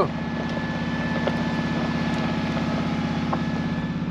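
Mercedes-Benz G-Class engine running steadily at low revs, heard from inside the cabin.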